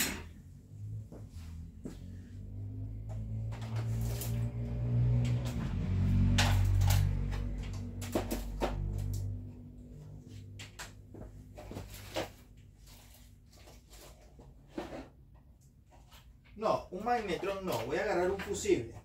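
Scattered knocks and clatter of objects being handled out of view, over a low hum that swells and fades in the middle.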